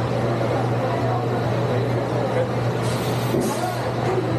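Roller coaster station ambience: a steady low hum with indistinct chatter, then about three seconds in a hiss of compressed air in two short bursts from the coaster's pneumatic system.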